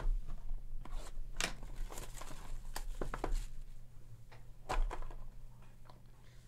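A cardboard trading-card box being opened and a hard plastic-cased card taken out by hand: irregular rustles, scrapes and short clicks, with a couple of sharper taps about a second and a half in and near five seconds in.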